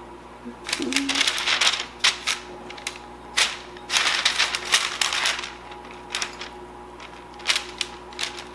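Biscuit dough being scraped and knocked out of a metal measuring cup onto a parchment-lined baking sheet, with rapid clicks and scrapes and crinkling paper. There are two bursts, about a second in and again around four seconds, with single taps between them and near the end.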